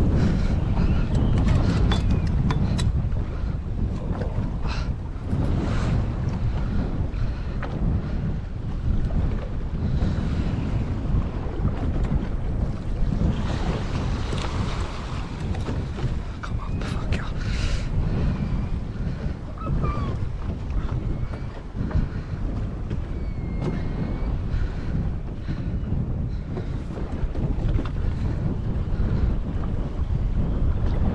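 Wind buffeting the microphone on a boat at sea, a steady low rumble over the wash of the sea.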